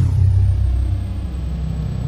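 Logo-intro sound effect: a deep rumble that hits suddenly and holds steady, with a thin high tone sliding down at the start.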